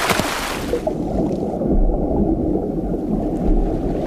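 A rushing splash, then the muffled, low churning and gurgling of moving seawater heard from underwater.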